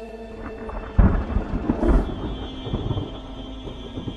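A thunder sound effect: a sudden deep boom about a second in, followed by crackling rumble that fades away, as the last held notes of the intro music die out.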